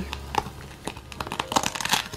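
Crinkling and rustling as a hand works inside a soft travel bag's lined pockets, among its plastic-lined pouches. The sound is light and crackly and gets busier toward the end.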